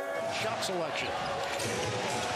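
A basketball being dribbled on a hardwood arena court, a few sharp bounces over steady crowd noise.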